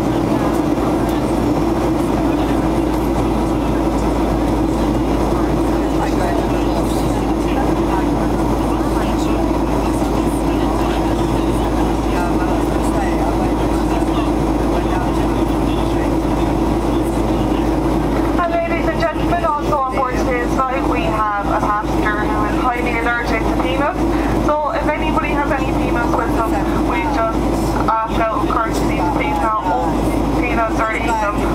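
Steady cabin drone of a Boeing 737-800 in flight, its CFM56-7B engine and the rushing airflow heard from a window seat beside the engine, with a constant low hum under it. A voice comes in over the drone about two-thirds of the way in.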